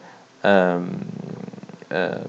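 A man's voice holding a drawn-out hesitation sound, an 'ehh' that begins about half a second in and trails off into a low, rough hum for over a second before he starts speaking again.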